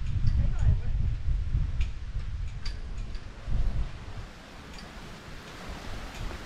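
Wind buffeting the microphone: a low rumble that swells and fades, with a few faint sharp ticks scattered through it.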